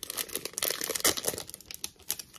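Foil wrapper of a trading card pack being torn open by hand, crinkling and crackling in quick, irregular strokes as it is peeled back.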